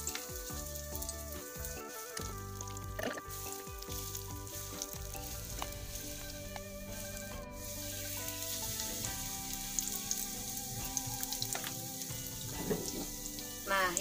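Batter-coated pieces of kue keranjang (sweet sticky rice cake) sizzling steadily in hot oil in a frying pan, as more pieces are spooned into the oil.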